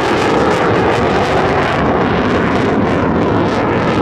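Fighter jet flying past overhead: a loud, steady rush of jet engine noise spread across the whole range from deep rumble to hiss, which cuts off abruptly at the end.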